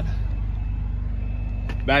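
Ford F-150 EcoBoost V6 engine idling, a steady low hum.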